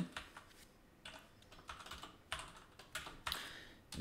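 Computer keyboard being typed on: scattered, irregular keystrokes, fairly faint, as code is entered in a text editor.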